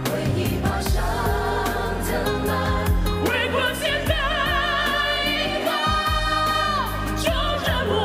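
Male singer performing a ballad live with band accompaniment: a long held note with wide vibrato in the second half that slides down as it ends, then the singing goes on.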